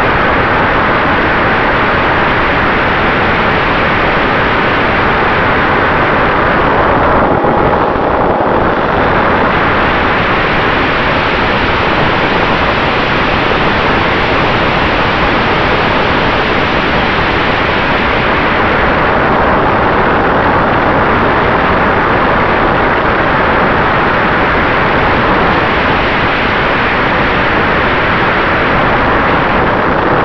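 Freewing F-86 Sabre RC jet heard from its own onboard camera in flight: a loud, steady rush of airflow and electric ducted fan, with a faint steady tone under it. The upper part of the sound thins briefly about seven seconds in and again around twenty seconds.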